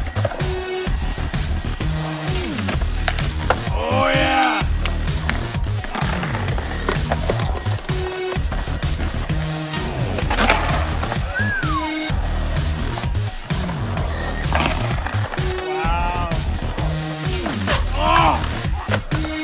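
Music with a steady, repeating bass pattern, over skateboard wheels rolling on concrete and occasional clacks of the board.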